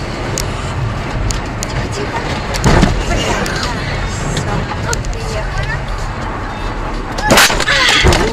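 Car interior road and engine noise on a snowy highway: a steady low rumble with faint ticks. A sudden loud bang comes about three seconds in, and a louder crash of noise near the end as a cloud of snow swamps the windscreen.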